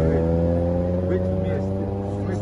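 A car engine idling steadily close by, with faint voices over it.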